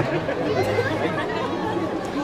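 Crowd chatter: several people talking at once around the microphone, over a steady low hum.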